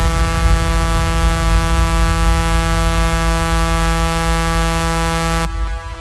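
Electronic dance music breakdown: one held, buzzy synth note at a steady pitch over a deep rumbling bass, with no beat. About five and a half seconds in the note stops and only a muffled low rumble is left.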